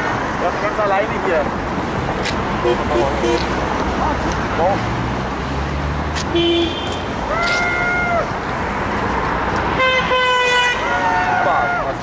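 Car horns honking from passing traffic, two short honks in the second half, in answer to a protest sign asking drivers to honk against Scientology. Steady street traffic noise and the voices of a small crowd run underneath.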